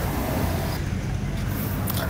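Outdoor street ambience: a steady low rumble with faint voices of people nearby.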